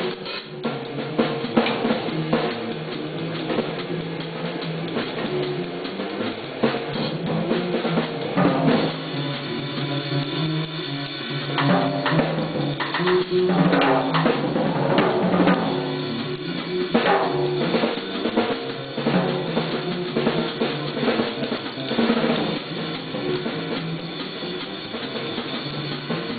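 Jazz drum kit played live: cymbals, snare and bass drum in a busy, continuous pattern that swells louder around the middle.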